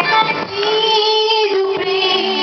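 A young woman singing a Telugu Christian song into a microphone, holding one long note from about half a second in, with electronic keyboard accompaniment.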